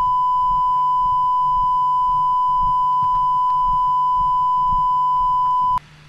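Steady 1 kHz line-up (reference) tone recorded with colour bars at the head of a videotape, one unbroken beep that cuts off suddenly near the end.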